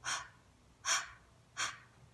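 A woman breathing out in three short, breathy puffs, evenly spaced.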